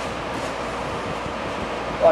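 Steady room fan noise, an even whoosh with a low hum underneath.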